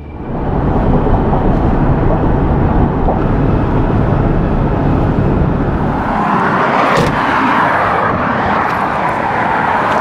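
Steady rush of road and wind noise from a car driving at highway speed. About six seconds in, the rush turns brighter and hissier, with a single click about a second later.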